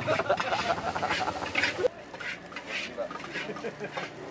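Nasi goreng being fried in a wok: a metal spatula clatters and scrapes rapidly against the wok over a frying sizzle. About two seconds in this stops abruptly, leaving lighter clinks of dishes and cutlery under background chatter.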